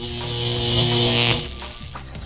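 Electronic power-up sound effect for a toy car's speed-booster transformation: a high whine, just swept up, held over a loud buzzing hum. The hum fades about a second and a half in, then the whine cuts off suddenly.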